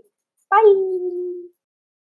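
A woman's voice saying one drawn-out "bye", high at first and falling in pitch, lasting about a second.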